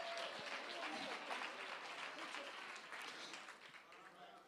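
Faint congregation applause, many hands clapping, with a few voices calling out. It dies away gradually and is nearly gone by the end.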